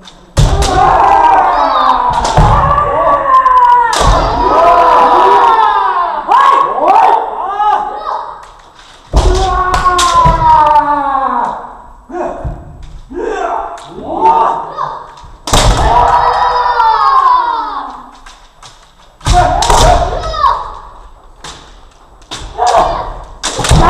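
Kendo kiai: long, loud shouted cries that bend and fall in pitch, about five of them, each opening with the thump of a stamping foot on the wooden floor and sharp clacks of bamboo shinai striking armour.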